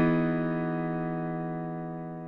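Closing music: a single held chord on a piano-like keyboard, slowly dying away.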